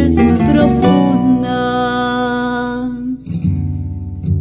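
Acoustic guitars with a guitarrón bass playing the instrumental accompaniment of a zamba. A long held note fades out about three seconds in, then plucked guitar notes resume.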